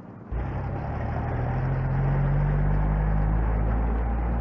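Mobile shop lorry's engine running as the lorry drives off, starting abruptly about a third of a second in with a strong low hum, its note and loudness rising slightly.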